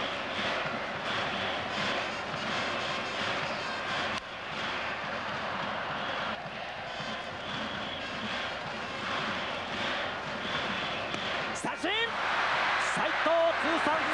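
Large baseball stadium crowd, a continuous din of many voices cheering, growing louder near the end.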